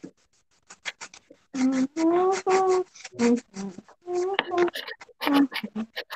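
A child's voice makes short wordless sounds, some held on a level pitch for most of a second, heard over a video call. In the first second and a half there are only a few light scratchy clicks before the voice comes in.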